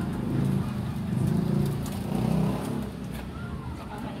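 A motor vehicle engine running, louder over the first three seconds and then fading.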